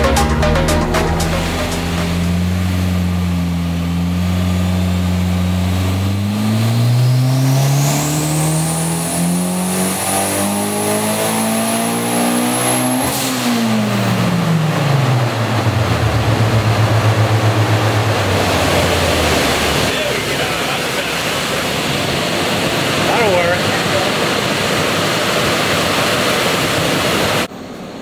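Turbocharged Honda K20 four-cylinder on a hub dyno making a pull. It holds a steady low speed, then the revs climb for about seven seconds with a rising turbo whistle. About halfway through it lets off and the revs fall away quickly, leaving a rushing noise.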